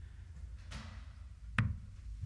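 A single steel-tip dart striking a Winmau bristle dartboard with a sharp thud about one and a half seconds in, over a low steady room hum.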